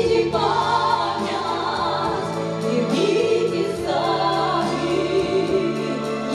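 Two women singing a duet through microphones over an instrumental accompaniment.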